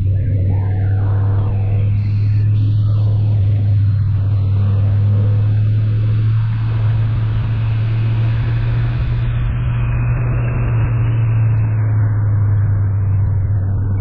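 Motorcycle engine running at a steady cruise, a constant low drone mixed with wind and road noise.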